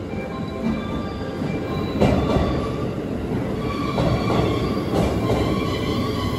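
Electric train pulling into the station platform: steady rumbling of wheels on rail with a thin squeal, and louder clunks about two, four and five seconds in.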